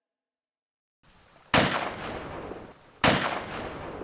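Two shotgun blasts about a second and a half apart, each sharp and then fading away in a long echo. They are a sound effect in an audio drama, and they come after a second of silence.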